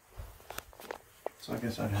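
A few light footsteps with short clicks, then a woman starts speaking near the end.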